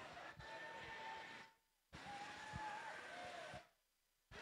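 Faint hall noise during a robotics competition match: a murmur of crowd and robots with scattered knocks and a held whine about half a second in. It cuts out abruptly twice, as a microphone gate closes.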